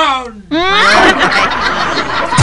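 A voice actor laughing: a voice slides steeply down in pitch, then about half a second in a sudden loud, dense burst of laughter takes over.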